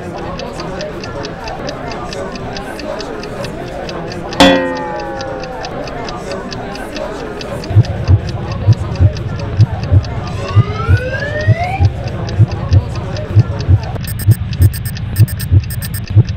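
Cartoon sound effects: a clock ticking steadily over a background murmur, with a sudden sound that falls in pitch about four seconds in and a rising whistle-like glide about ten seconds in. From about eight seconds on, heartbeat-like low thumps beat two to three times a second.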